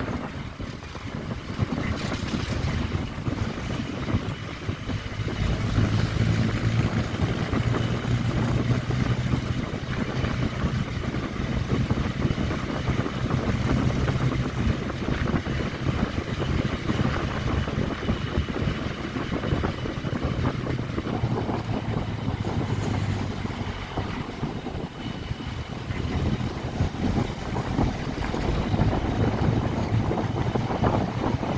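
A vehicle driving at a steady speed, its engine humming low under wind buffeting the microphone and road noise, as heard from an open side window. The engine note eases off a little past the middle and the sound dips briefly before picking up again near the end.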